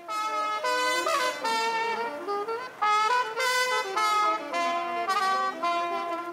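A solo trumpet playing a melody of separate held notes, stepping up and down in pitch, fading out near the end.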